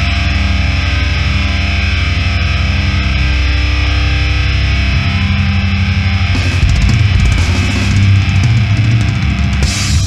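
Heavy metal band recording: loud distorted electric guitars and bass with a drum kit, with cymbal crashes and busier drumming coming in about two thirds of the way through.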